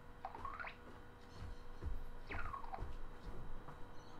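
Merlin, the Microsoft Agent wizard, playing his animation sound effects through the computer's speakers: a quick whistle-like glide rising near the start and a falling one a little past the middle, with a few low thuds between.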